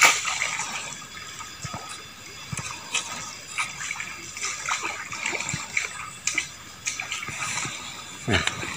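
Light sloshing and splashing of water in a small, shallow rock pool as a worm-baited hand line is jiggled in it, with scattered small taps and clicks.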